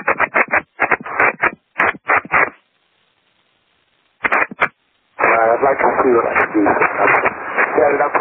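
Speech over an aviation radio, thin and cut off at the top, coming in short broken phrases, with a stretch of faint radio hiss of about a second and a half in the middle.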